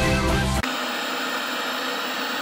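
A brief bit of music, then from about half a second in a steady hiss of television static.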